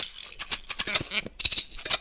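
Several shakers played together in a brisk rhythmic pattern: a run of sharp, dry shaking strokes, with a bright jingling hiss at the start.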